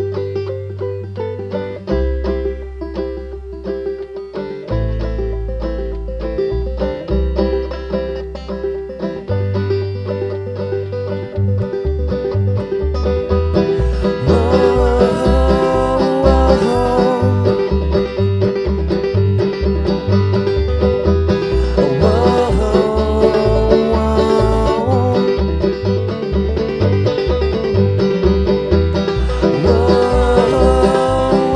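Bluegrass song played on banjo, acoustic guitar and upright bass, the banjo leading. For the first third the bass holds long low notes, then falls into a steady plucked beat, and singing comes in about halfway through.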